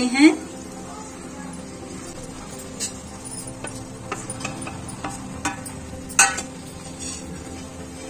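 Tomato gravy boiling steadily in a pan, with a few scattered knocks and clinks as fried potato and cauliflower pieces are tipped in from a steel bowl and a wooden spatula meets the pan; the loudest knock comes about six seconds in.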